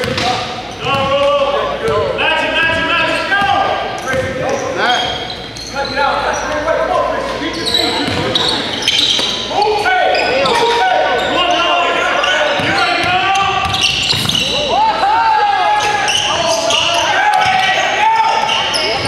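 Basketball bouncing on a hardwood gym floor as players dribble it during play, with players' voices calling out.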